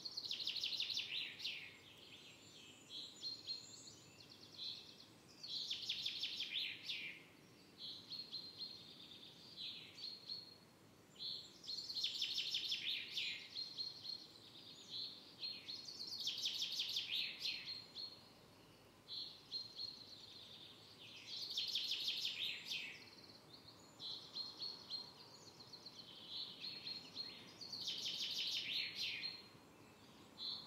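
A songbird singing the same short song over and over, about every five to six seconds: a run of short high notes ending in a longer trill, over faint outdoor background noise.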